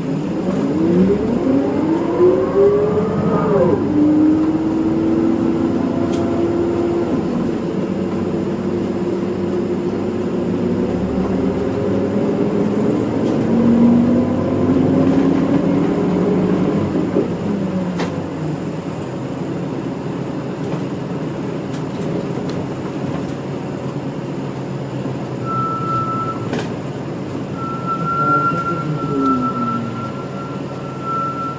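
Inside a city bus, the Isuzu Erga Mio's diesel engine and drivetrain pulling away, the pitch rising steadily and then dropping back as it shifts up. It pulls up in pitch again in the middle and eases off, and near the end the pitch falls as the bus slows, with a steady high whine over it.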